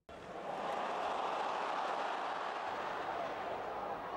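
Football stadium crowd noise: the steady hum of a large crowd in the stands, which cuts in suddenly at the start.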